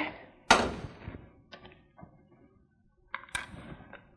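Kitchen items being set down and handled on a counter: one sharp knock about half a second in that rings on briefly, then a few lighter clicks and knocks.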